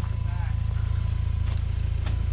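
2019 Ford Ranger's 2.3-litre turbocharged four-cylinder engine running at a low, steady near-idle as the truck crawls slowly down a rocky slope.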